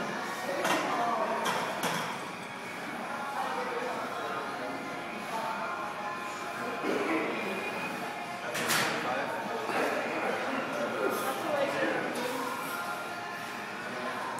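Indistinct voices and background music echoing in a large gym hall, with a few sharp clanks, the strongest about two-thirds of the way through.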